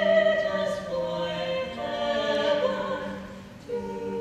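Three women's voices singing a cappella in harmony, holding long notes, with a brief break near the end before the next chord.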